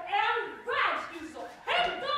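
Actors' voices on stage: three short, loud vocal bursts, each swooping steeply up and down in pitch, like exaggerated comic shouts.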